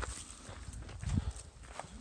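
Footsteps scuffing and crunching on a rocky gravel trail, stepping backwards, with scattered small knocks over a low rumble on the microphone.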